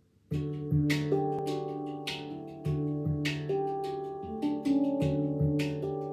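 Handpan played with the hands: a melody of struck steel notes that ring on and overlap, with a low centre note sounding again and again, starting after a brief pause at the very beginning.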